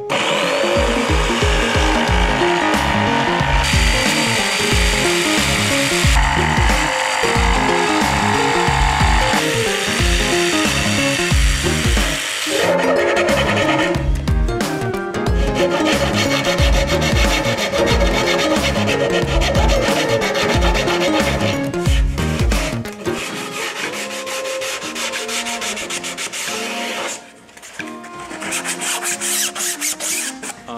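A jigsaw cutting through a plywood boat hull, then a hand file rasping back and forth along the cut edge, over background music with a regular bass beat that stops a few seconds before the end.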